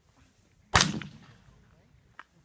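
A single shotgun shot about three-quarters of a second in, its report fading over about half a second.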